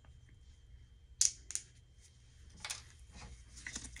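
A few sharp little clicks and rustles from gloved hands handling a small glass medication vial and a plastic spray bottle, the loudest click about a second in and a quick cluster near the end.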